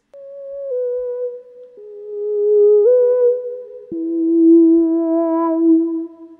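Monophonic synth pad playing a slow single-note line dry, with no harmonies added: about five notes stepping downward, one step back up, then a low note held through the second half.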